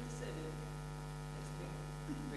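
Steady, low electrical mains hum in the audio chain, with faint voices in the room under it.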